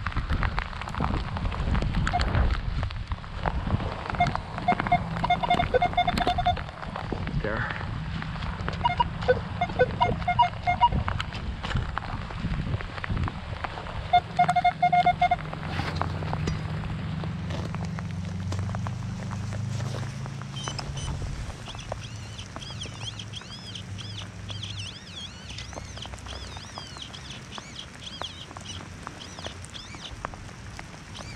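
Minelab X-Terra Pro metal detector giving short runs of steady mid-pitched target tones, some pulsing, over crunching wood-chip mulch as a target is found. Later come scraping and crunching of digging in the mulch, with faint high chirps.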